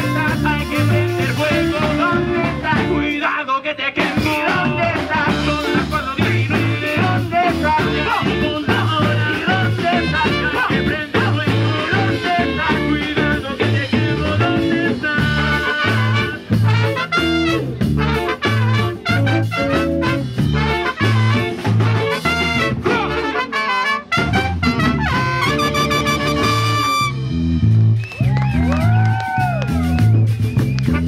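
Live Latin band playing: a repeating electric bass line over a drum-kit beat, with electric guitar, trumpet and sung vocals.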